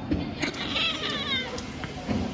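A kitten gives one high meow with a wavering pitch, lasting nearly a second, while its tail is being held.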